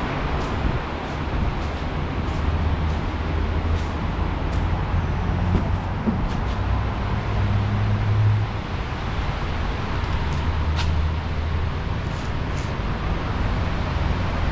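A steady low mechanical hum that swells briefly a little past halfway, with scattered light clicks throughout and one sharper click about three-quarters of the way through.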